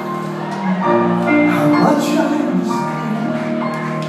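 A live band playing slow, held chords, with piano, bass and guitar among the instruments, the chords changing about once a second. It is heard from the audience in a theatre.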